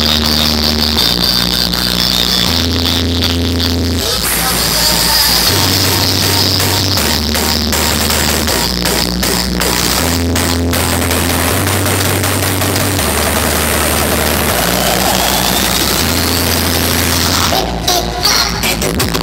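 Electronic dance music played loud through a large DJ sound system. A deep bass line steps between held notes about every second and a half. The mix fills out about four seconds in, and a rising sweep builds near the end.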